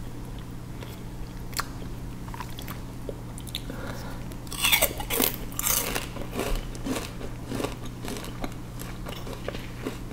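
Close-miked chewing of raw peeled sugarcane: crisp, juicy crunches of the fibrous cane, with a burst of louder crunching around the middle and quieter chewing clicks either side. A steady low hum runs underneath.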